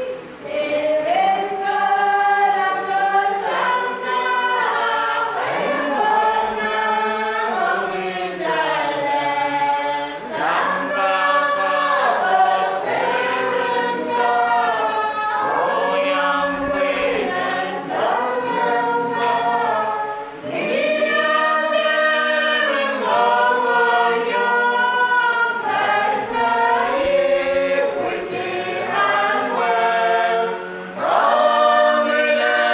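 Church congregation singing a hymn together, with notes held about a second each and no beat.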